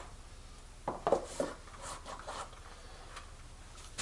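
Hands handling a gimbal and its packaging box: a few light knocks and rustles about a second in, then softer ones a little later.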